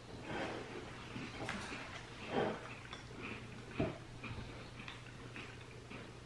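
All-butter shortbread with nibbed almonds being chewed close to the microphone: soft, irregular crunching in short bursts, loudest about two and a half and four seconds in.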